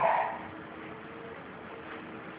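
A spoken word trails off in the first half-second, then a faint, steady background hum of room tone.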